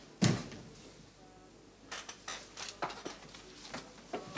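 A wooden door slams shut once, sharply, about a quarter of a second in. From about two seconds on come a run of small knocks and clicks.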